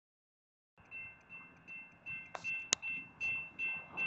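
Railroad crossing warning bell ringing in steady repeated strikes, about two and a half a second, starting just under a second in. One sharp click sounds partway through.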